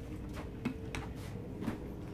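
Quiet room with a faint steady hum and a few soft taps as a child moves on a foam gymnastics mat, putting hands and feet down.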